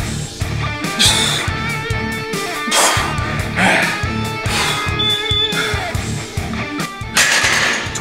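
Background music with a steady beat and a wavering guitar-like lead. A few short, sharp breaths cut in over it.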